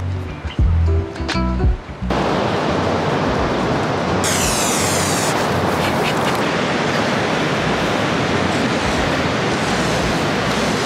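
Steady, loud rush of ocean surf and wind on the beach, buffeting the microphone. It cuts in abruptly about two seconds in, after a few low thumps.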